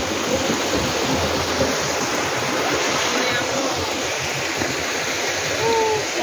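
A rocky mountain stream rushing steadily over and between boulders: a continuous, even hiss of running water.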